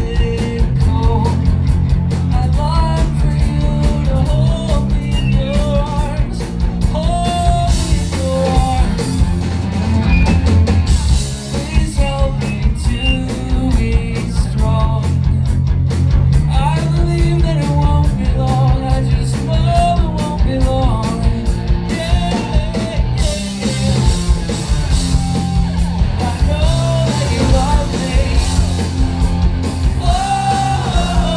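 Live rock band playing: a male lead vocal sung over electric guitars, bass and a steady rock drumbeat, loud and recorded from among the crowd.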